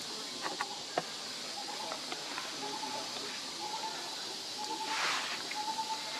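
Forest ambience: a steady high insect hiss, a short flat note repeating about once a second, a few sharp clicks near the start, and a louder rush of noise about five seconds in.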